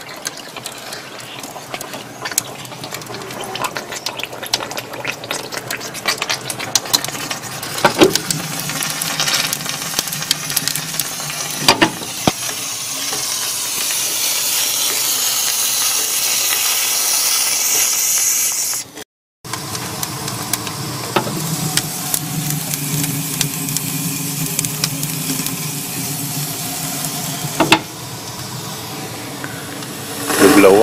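Steam hissing from the boiler fittings of a small coal-fired model steamboat while it raises steam. The hiss is loudest for several seconds before a brief drop-out, and scattered clicks and knocks are heard throughout.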